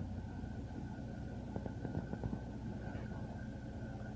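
Truck engine idling steadily, heard from inside the cab, with a faint steady high-pitched hum over the low rumble.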